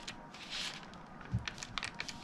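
Hands pressing a foam ring and acetate down onto a paper card: soft rustling and crinkling with a few light clicks, and one low thud a little past halfway.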